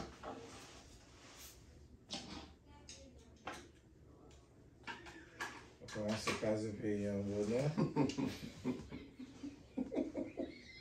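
Voices in a small room: a low murmur, then a louder, drawn-out vocal sound with a wavering pitch from about six to eight seconds in. A few short, sharp clicks come in the first half.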